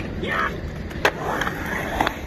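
Skateboard wheels rolling over a concrete skatepark bowl, with a single sharp clack of the board about a second in.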